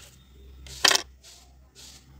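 Metal drawing compass with a pencil being turned on paper to draw a small circle: one sharp metallic click about a second in, then faint scratches of the pencil lead every half second or so.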